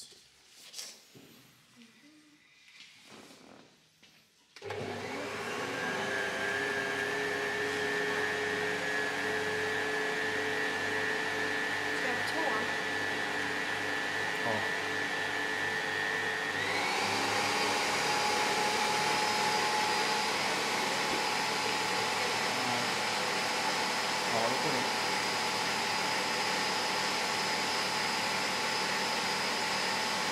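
A small electric motor-driven machine switches on about four seconds in and runs steadily with a hum. About twelve seconds later its pitch steps up, and it keeps running at the higher pitch.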